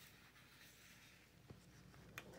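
Faint rustle of paper forms being handled, with a small tap about one and a half seconds in.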